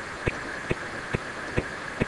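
Faint, evenly spaced ticks, a little over two a second, over a steady background hiss.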